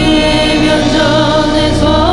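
Several voices singing a Korean psalm text together, accompanied by an ensemble that mixes Korean traditional instruments (haegeum, piri, percussion) with keyboard and acoustic guitar.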